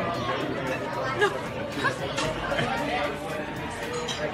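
Indistinct chatter of several voices talking at once: the hubbub of a busy restaurant dining room.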